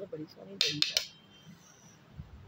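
A metal spoon clinking against a stainless steel plate: a quick run of about four clinks about half a second in, with a short metallic ring after.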